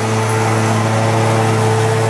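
A steady, loud motor or engine hum on one low pitch, which swells just before and then holds level.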